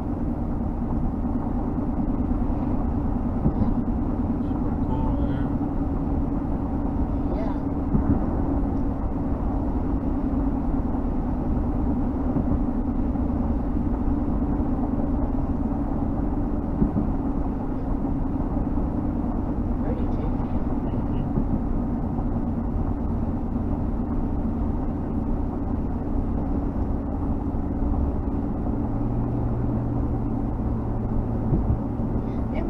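Steady road noise inside a vehicle cruising at highway speed: tyre rumble and engine hum with a constant drone. A lower hum joins in near the end.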